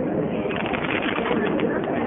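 Underwater fireworks bursting at the water's surface: a continuous rumbling din with light crackles in the second half, with no single big boom.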